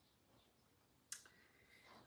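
Near silence: room tone, with one short click a little over a second in.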